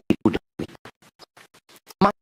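A man's speaking voice broken up by a glitching audio stream into rapid stuttering fragments, about seven a second, with dead gaps between, so that it sounds like record scratching. The fragments grow fainter in the second half.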